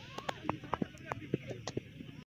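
Faint, distant voices of players calling across an open cricket field, with scattered short, sharp sounds over a low outdoor background.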